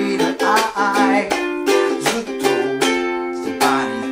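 A small ukulele strummed in a relaxed reggae rhythm through the chords C, G7, Am and G7, with a man singing the melody along with it.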